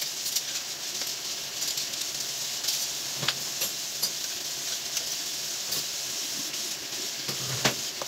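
Dishes being washed by hand in a kitchen sink: a steady hiss of water and scrubbing, with scattered small clinks and a couple of louder knocks of dishware, one about three seconds in and one near the end.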